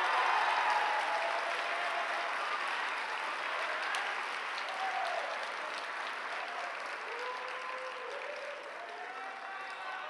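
Audience applauding, the applause slowly dying away, with a few faint voices among it.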